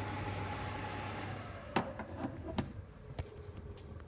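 Escea gas fireplace just switched off, its fan hum sliding down in pitch as it winds down. A few sharp clicks come in the second half.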